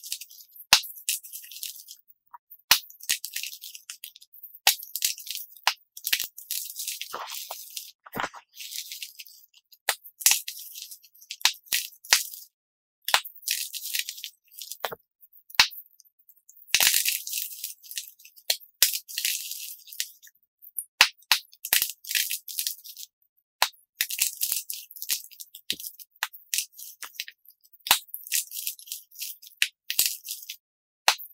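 Dyed chalk cubes crushed and crumbled between the fingers, played back sped up: quick dry crunching and crumbling in repeated bursts with brief silent gaps.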